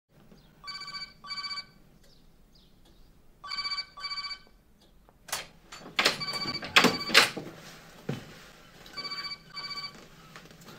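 A telephone ringing in the British double-ring pattern: four ring-ring pairs about three seconds apart. Between the second and third pairs come several sharp knocks or clatters, the loudest sounds here.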